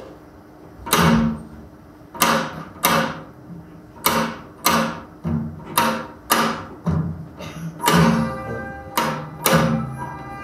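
Korean traditional accompaniment for a gutgeori dance, played back through room speakers: drum strokes spaced about one to two a second set out the gutgeori rhythm, and sustained melodic instruments join near the end.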